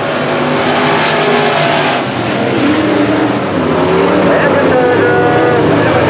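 Engines of several dirt-track sport modified race cars running hard as the pack goes by, their pitch rising and falling as the drivers work the throttle through the turns.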